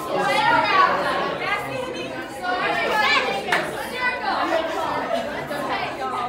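Many guests' voices, teenagers and children, chattering and calling out at once in a large hall.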